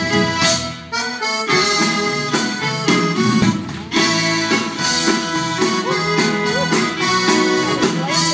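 Live country band playing an instrumental intro, with a steady drum beat under sustained melody notes.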